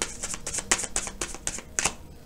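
A deck of astrology oracle cards being shuffled by hand: a quick run of sharp card clicks, several a second.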